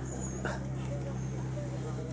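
A dog whimpering in short whines over a loud, steady low hum.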